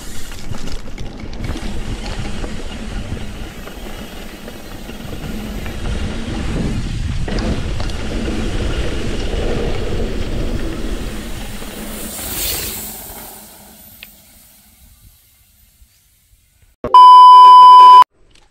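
Rough rumbling noise of a mountain bike riding a dirt trail, with wind on the microphone, fading away after about thirteen seconds. Near the end comes a loud one-second censor bleep, a steady high beep.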